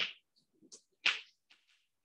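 Chalk writing on a blackboard: a few short, sudden scraping strokes, the loudest right at the start and another about a second in, with fainter ones between.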